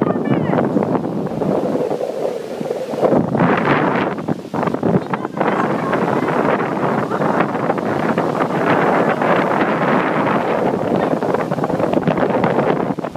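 Heavy ocean surf breaking and washing up the beach, with strong wind buffeting the microphone.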